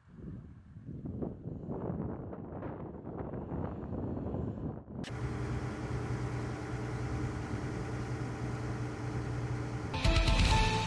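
Uneven outdoor noise, then, starting abruptly about halfway through, a motor running steadily with a low, even hum.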